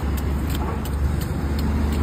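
Steady low engine hum, like a motor vehicle idling, with faint clinks of crushed ice tipped from a sack into a clay pot.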